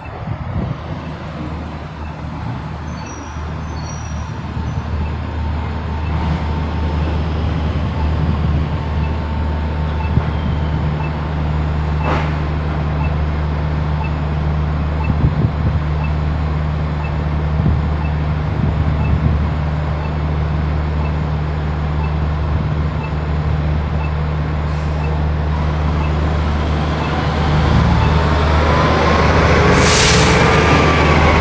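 A heavy diesel engine runs with a steady low drone that slowly grows louder. Near the end a city bus pulls through the intersection, its engine and drive making a rising whine as it accelerates. A faint tick repeats about once a second through the middle.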